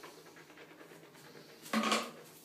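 Mouthwash being swished around a closed mouth, a soft wet churning. Near the end comes one short, loud, throaty burst.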